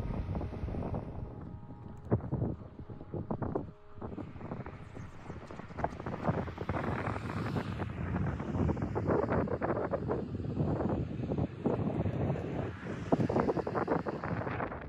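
Wind buffeting the camera's microphone in uneven gusts on an open seashore, a rough, irregular rumble.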